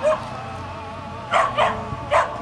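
A dog barking: one short bark at the start, then two quick barks about a second and a half in.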